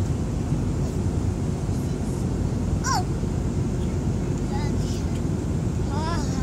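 Steady low drone of airliner cabin noise from the engines and airflow, with a few short high-pitched voice sounds over it, one falling in pitch about halfway through.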